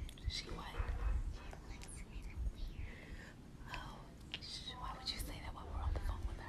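Quiet whispering voices in short, broken fragments.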